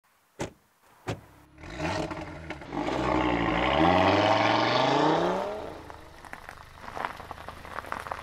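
Two short clicks, then an Audi quattro car's engine starts and revs, rising steadily in pitch for a couple of seconds. It then falls back and runs on quieter, fading out near the end.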